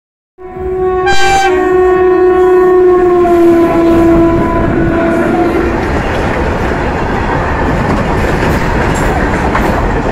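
Indian Railways electric locomotive sounding one long horn blast of about five seconds as it passes close by. Under it and after it comes the loud, steady rumble of a freight train of open-top wagons rolling past.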